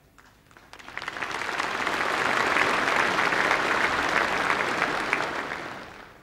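Congress delegates' applause filling a large hall, building up over the first second or so, holding steady, then dying away near the end.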